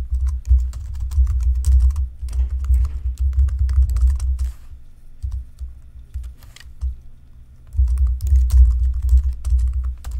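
Typing on a computer keyboard: rapid key clicks with dull thumps under them. It stops for about three seconds midway, then the typing starts again.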